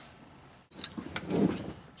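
After a quiet moment, a few light clicks and a brief rubbing, scraping noise of equipment being handled.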